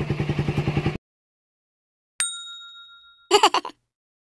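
About a second of motorcycle engine idling cuts off abruptly to dead silence. A single bright ding then strikes and rings out, fading over about a second, followed near the end by a brief sharp burst, an edited-in sound effect.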